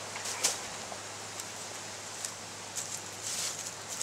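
Steady background hiss with a few faint, short crackles as a crushed nettle stem is bent and its outer fibres are peeled away from the pithy core.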